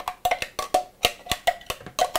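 A metal spoon knocking and scraping inside a plastic food processor bowl, a quick irregular run of sharp taps, as thick chipotle-adobo puree is scooped out into a mixing bowl.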